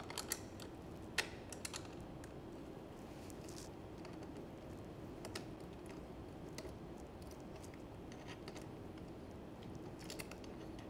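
Faint, scattered metal clicks and ticks of a 10 mm ring wrench and a Phillips screwdriver working the nut and bolt of a bicycle's coaster brake arm, loosening the nut. The clicks are irregular, with a sharper one about a second in, over a low steady background.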